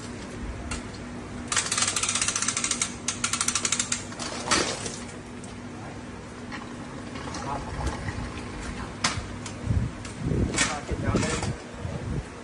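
Ratchet of a metal calving jack clicking rapidly for about two and a half seconds as it draws the calf out, followed by a few separate knocks. A person's voice near the end.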